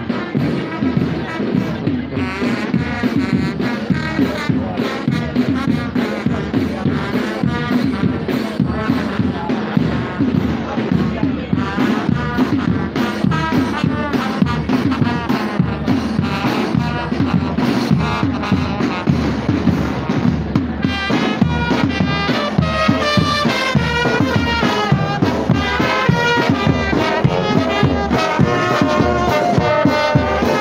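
Marching brass band playing: drums keep a steady beat throughout, and the brass tune of trumpets, trombones and sousaphone comes in louder and clearer about two-thirds of the way through.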